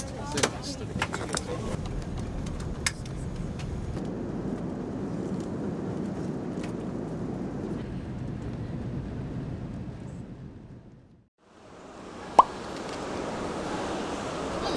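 Steady airliner cabin noise, a low rumble and rush, with a few sharp clicks in the first few seconds. It fades out about eleven seconds in; a different ambience then fades in, with one short, sharp beep.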